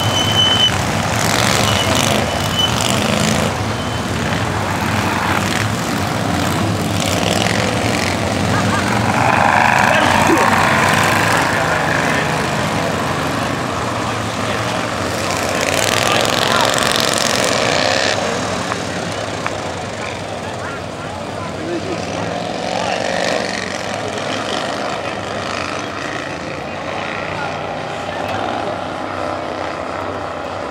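Racetrack ambience: small race-car engines running on the track, mixed with people's voices around the fence and stands.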